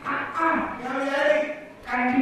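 A performer's voice drawing out a long, pitch-bending phrase in a villu paattu (Tamil bow-song) performance, breaking off briefly near the end.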